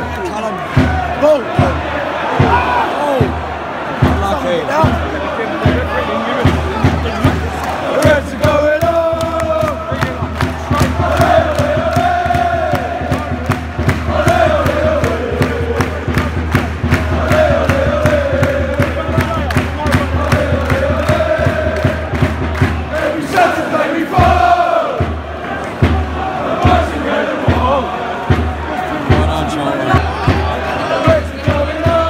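Football crowd in a stadium stand singing a chant together, with many voices holding sung lines over fast, rhythmic clapping.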